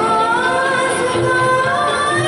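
A woman singing into a microphone, holding one long note that slides slowly upward.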